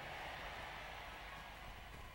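Faint steady hiss with a low hum underneath, with no distinct event.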